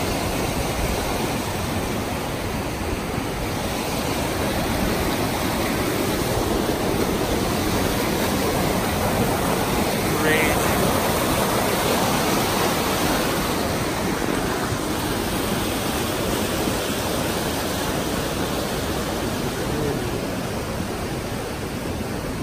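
Whitewater of East Inlet, a fast mountain creek, rushing steadily over rocks, swelling slightly around the middle.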